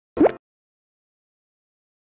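A short cartoon sound effect: one quick bloop with a rising pitch, about a quarter of a second long, a moment after the start, then dead silence.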